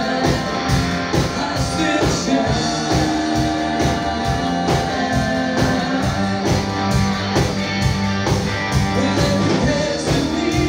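Live rock band playing: electric guitars, bass, keyboard and a drum kit keeping a steady beat of about two strokes a second.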